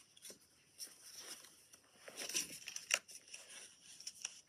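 Faint rustling and light taps of a cardboard box and its packaging being handled, with a sharper click about three seconds in.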